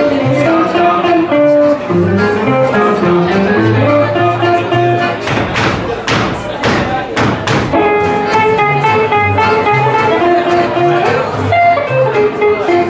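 Live acoustic swing band playing an instrumental passage: upright double bass walking under acoustic guitars and a sustained lead melody line. Around the middle there is a run of sharp, hard-struck chords.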